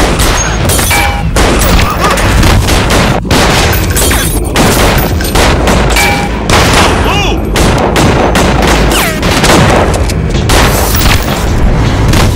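Movie-soundtrack gunfight: rapid pistol and rifle shots, several a second, one after another with booming impacts between them.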